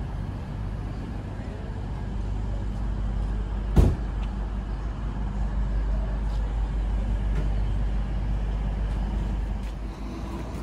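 Steady low rumble of road traffic and idling vehicles, with one sharp knock about four seconds in.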